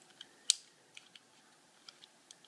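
A red dot gun sight's on switch clicking once sharply as it is turned on, followed by a few faint clicks of the sight being handled.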